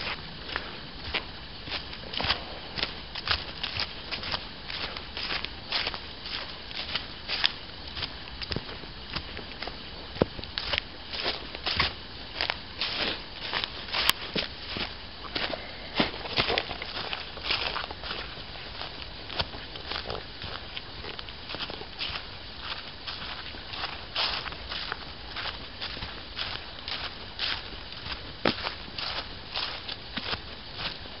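Footsteps crunching and rustling through dry fallen leaves on a woodland path, one short crackle for each step at a walking pace.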